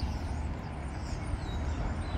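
Outdoor background noise: a steady low rumble with an even faint hiss above it.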